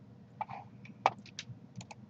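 A run of short, sharp computer mouse clicks, about eight spread across two seconds, the loudest about a second in, with a faint short throat sound about half a second in.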